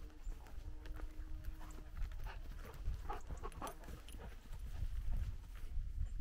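A giant schnauzer breathing and moving close to the microphone, with quick, short, repeated sounds clustered in the middle, over footsteps on a dirt trail. Wind rumbles low on the microphone throughout.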